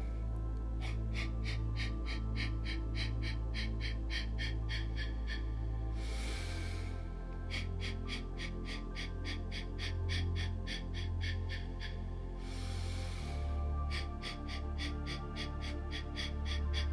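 Breath of Fire breathwork: a person's rapid, sharp exhales through the nose, about four a second, in runs of about five seconds. A longer inhale breaks the runs about six and about twelve seconds in. Calm meditation music with a low drone plays underneath.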